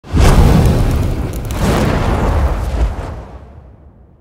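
Cinematic logo-intro sound effect: a deep boom with a rushing swell that surges again about a second and a half in, then fades out near the end.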